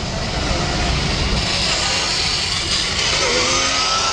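A small electric ride-on racing car, a modified Power Wheels-style monster truck, driving close past on asphalt: a low rumble in the first second or so, then a steady hiss as it moves away.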